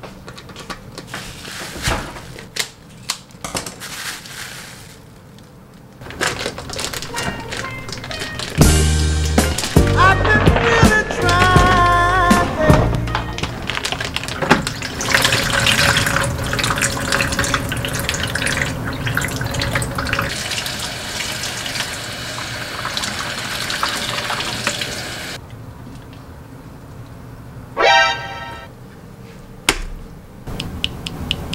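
Light crinkles and taps on the plastic wrap of a raw turkey. Then background music with held notes and a beat, and juice from the turkey pouring and splashing into a plastic bowl in a sink. A short pitched sound near the end.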